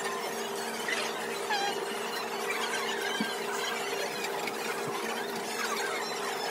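Steady background hum with a continuous scatter of faint, high squeaks and chirps, from a busy food-stall kitchen.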